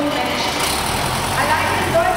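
A truck's engine running as it drives slowly past, its low sound coming up about half a second in, with people talking nearby.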